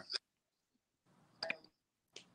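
Dead silence on a choppy video-call line, broken by a brief blip right at the start and another short, clipped blip about one and a half seconds in.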